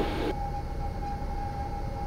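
Cessna 172's engine throttled back to idle on final approach: a low steady drone heard through the cockpit intercom, with a thin steady tone running through it.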